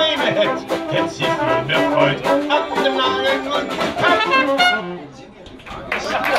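Dixieland jazz band of trumpet, clarinet, saxophone, banjo, sousaphone and drums playing the closing bars of a tune, ending on a last accented note about five seconds in. Clapping starts right at the end.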